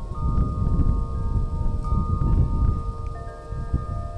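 Metal wind chime ringing in the breeze: several clear tones start one after another and hang on. Wind rumbles on the microphone underneath.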